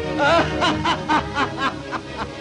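A cartoon character laughing in a quick run of about six 'ha' bursts, roughly four a second, over background music.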